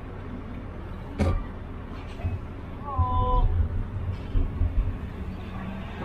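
Low rumble of a car driving in city traffic, heard from inside the cabin, with a sharp click about a second in and a short, slightly falling pitched cry about three seconds in.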